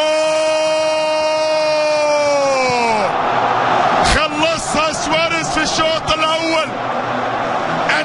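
A football commentator's long, held shout of "goal", lasting about three seconds and sagging in pitch as it ends, followed by more excited shouting, over a stadium crowd cheering.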